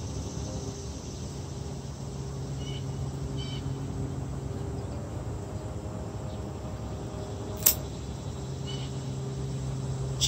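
A single sharp snip of hand pruning shears cutting through a cucumber stem about three-quarters of the way in. Under it runs a steady low hum, with a few short high chirps.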